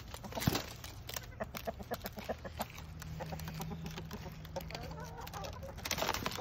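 Domestic chickens clucking softly, with a sharp knock about half a second in and light scattered clicks throughout.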